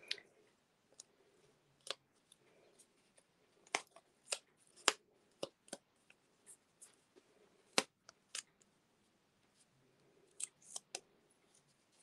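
Small craft scissors snipping and paper pieces being handled: about a dozen short, sharp clicks at uneven intervals, with quiet gaps between.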